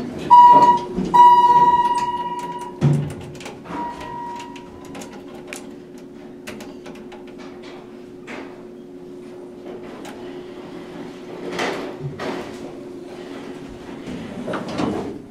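Elevator buzzer beeping twice, a short beep and then a longer one. The car doors thud shut about three seconds in, and a steady hum with scattered small clicks follows as the traction elevator runs.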